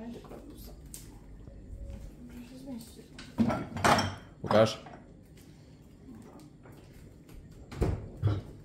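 Small glass jars and food items knocking and clinking on fridge shelves as they are moved about, with a few brief murmured words midway. Near the end comes a louder thump as the fridge door is pushed shut.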